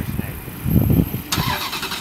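A sports car's engine being cranked on its starter: the cranking starts suddenly about a second and a half in, just before the engine fires.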